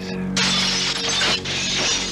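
A loud shattering crash starts about half a second in and carries on for over a second, over a held chord of dramatic music.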